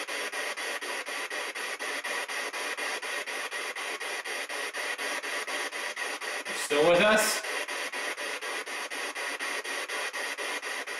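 Radio static chopped into even pulses about five times a second, the sound of a radio scanning through stations as used in ghost hunting. About seven seconds in, a brief loud fragment of voice breaks through the static.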